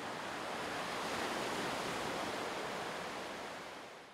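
Ocean surf washing onto a sandy beach: a steady rushing that fades out near the end.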